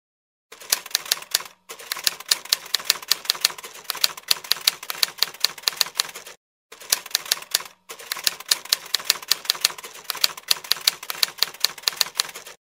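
Typewriter typing: a quick run of sharp key clacks, several a second, stopping briefly three times.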